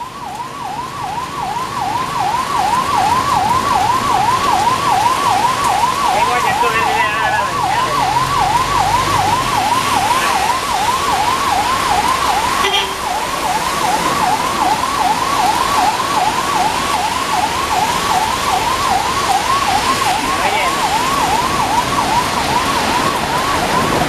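A highway patrol vehicle's electronic siren wails steadily, repeating a quick rising sweep about twice a second. Underneath it is the steady hiss of heavy rain and water.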